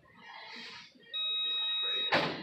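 A single steady, high-pitched electronic beep, like an alarm tone, starting about halfway through and held for about a second.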